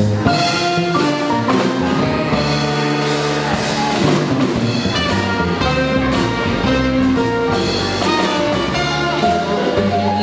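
A live jazz band plays an instrumental passage without vocals: a walking bass line on an electric upright bass under keyboard and melody lines, with a drum kit keeping time.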